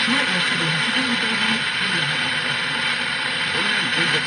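Pioneer car stereo on FM 89.5 picking up a distant Algerian station through sporadic E. A faint Arabic news voice runs under heavy, steady static hiss, the sign of a weak long-distance FM signal.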